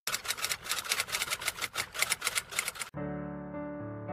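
Typewriter-style typing sound effect: a rapid run of sharp clicks, about eight a second, for about three seconds. It cuts off suddenly and soft electric-piano background music begins.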